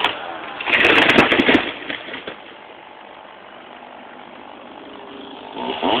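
Chainsaw engine revved briefly about a second in, then running quietly at idle, and revving up again near the end.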